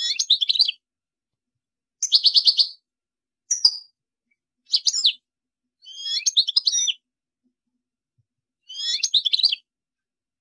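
European goldfinch singing in six short bursts of rapid, high twittering, each under a second long, separated by gaps of silence. The second burst, about two seconds in, is a fast even trill.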